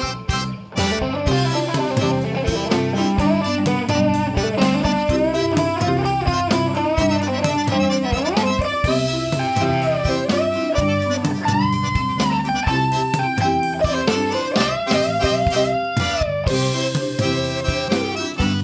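Zydeco band playing live: an electric guitar plays a lead line with bent, sliding notes over bass guitar and drums.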